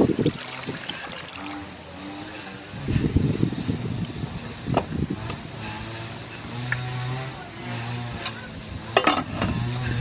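Water poured from a plastic jug over clams in an aluminium pot, then the pot handled on a clay stove. Near the end the aluminium lid is set on with a clank. A short low hum comes in for a couple of seconds in between.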